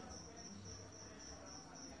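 Faint, high-pitched chirping that pulses a few times a second, over a low steady hum.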